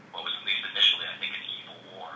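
Speech only: a person talking, the voice thin and narrow-band as over a telephone or call line.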